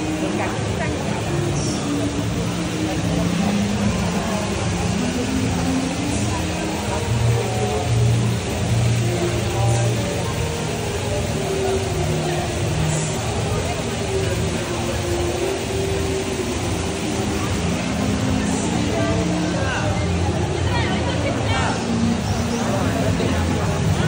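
Steady rushing of an artificial waterfall cascading down rockwork, over an ongoing murmur of many visitors' voices.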